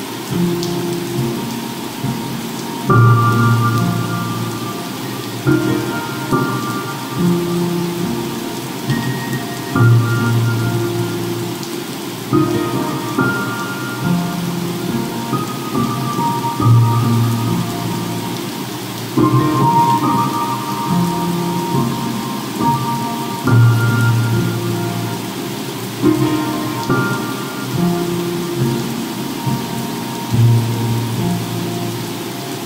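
Slow, soft piano music, with notes and chords struck every two to three seconds, over a steady bed of ocean-wave noise and crackling fireplace sounds.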